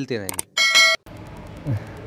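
A short electronic notification beep, one bright tone held for about half a second, that cuts off abruptly. Steady background hiss follows.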